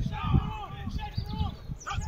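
Several voices shouting short, sharp calls one after another as football players set up at the line before the snap, over a low rumble.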